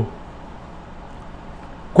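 A pause between sentences of a man's talk, holding only faint steady background hiss.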